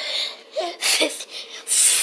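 Short bursts of rubbing and brushing noise close to the microphone, from people moving through burpees on the floor beside it, with brief bits of voice in between.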